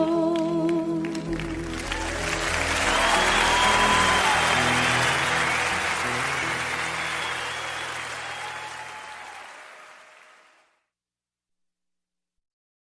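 The end of a live folk song: a last sung note and the band's final notes ringing out under audience applause, which swells and then fades away. It stops dead about ten and a half seconds in, leaving silence.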